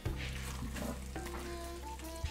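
Wooden spoon stirring thick chili with pinto beans in an enamelled cast-iron pot: soft wet scraping and squelching of the stew as it is folded gently. Quiet music with a few held notes runs underneath.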